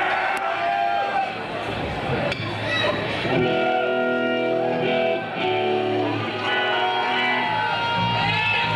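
A live rock band's electric guitar noodling between songs, loose notes giving way to a few held chords in the middle and one long steady note near the end, over crowd voices and shouts.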